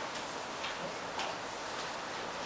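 Marker writing on a whiteboard: a handful of short, irregular scratchy strokes over a steady background hiss.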